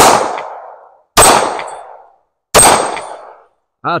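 Three shots from a Ruger Security-9 Compact 9 mm pistol, a little over a second apart, each followed by a fading echo.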